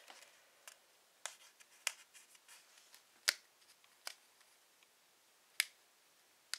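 Fingernails picking at the edge of a paper sticker to lift it off its backing: a scatter of short, sharp clicks, the loudest about three seconds in.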